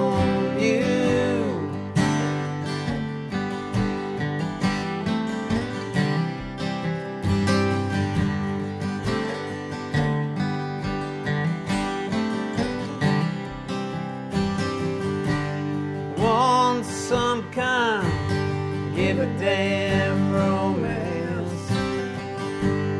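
Two acoustic guitars, one of them a Maton dreadnought, playing a song together with chords ringing and frequent note onsets. A voice sings briefly near the start and again for a few seconds late on.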